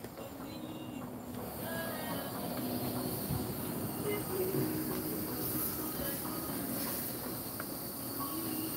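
Steady hiss of an outdoor propane burner under a wok of coconut-milk curry, with a continuous high insect trill behind it.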